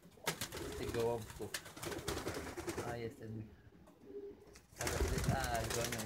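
Racing pigeons cooing, a run of repeated low coos that drops away briefly a little after three seconds in, then picks up again near the end.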